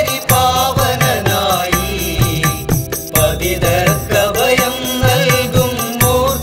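Malayalam Hindu devotional song to Ganesha: chant-like singing over instrumental accompaniment, with a steady percussion beat and sustained low notes.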